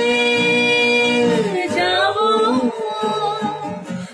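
A man and a woman singing a Bengali song together, holding one long note for about a second and a half, then moving into a winding phrase.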